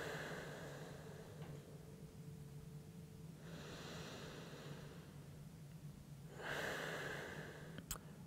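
A man breathing slowly and deeply through the nose while holding a yoga pose: three long, soft breaths a couple of seconds apart.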